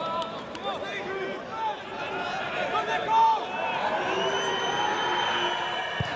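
Football stadium ambience: a small crowd and players shouting in short scattered calls. A little past halfway, a long steady high whistle sounds for about two seconds.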